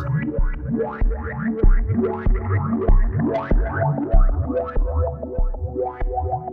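Synthesizer sound chopped by a sequenced gate plug-in into a rhythmic pattern of short, filtered notes over a steady low pulse about every 0.6 seconds, the gate's resonant filter and drive shaping each note.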